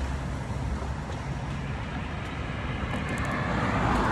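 Road traffic noise: a steady rumble of passing vehicles, swelling a little toward the end.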